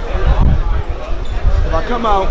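Voices talking in a crowded press scrum, with low thuds and rumble of a handheld microphone being jostled.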